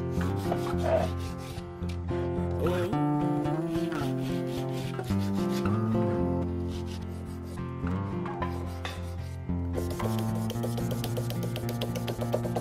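A strip of abrasive paper rubbed in repeated strokes around a carved mammoth ivory knife handle clamped in a vise, sanding the carving smooth. Background music plays underneath.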